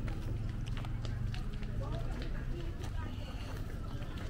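Street ambience: distant voices chattering indistinctly, with scattered footsteps and sharp clicks over a low steady rumble.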